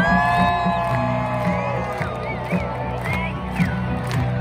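Marching band playing in a packed football stadium: brass holding long chords over a steady drum beat, with the crowd cheering and whooping.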